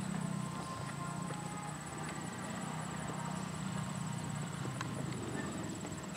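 A horse trotting a dressage test on a sand arena, its hoofbeats soft and muffled by the footing, over a steady low drone.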